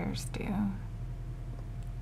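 A woman says a word softly near the start, over a steady low hum that carries on throughout.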